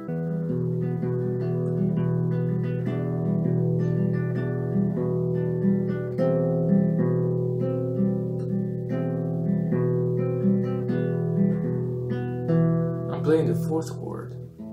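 Nylon-string classical guitar fingerpicked in a continuous flowing pattern: a sustained low bass with plucked bass notes alternating underneath repeated higher melody notes. A brief noise cuts across the playing near the end.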